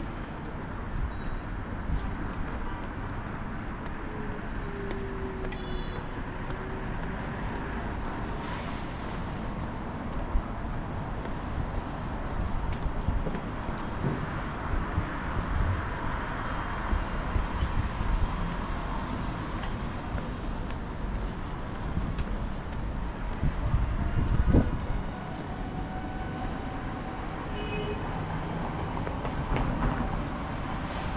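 City street traffic noise: a steady wash of cars passing on a multi-lane road, with a louder low rumble from a passing vehicle about three quarters of the way through.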